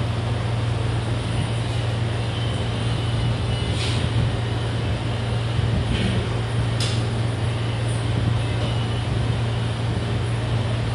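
Steady low mechanical hum under an even background noise, with a few faint clicks about four, six and seven seconds in.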